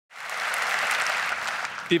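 Audience applauding, dying away near the end as a man starts to speak.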